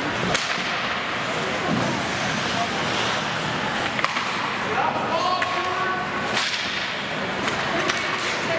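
Ice hockey play in a rink: sharp clacks of sticks on the puck, one just after the start, one about four seconds in and one about six and a half seconds in, over a steady hiss of skates and rink noise. A voice calls out briefly around the middle.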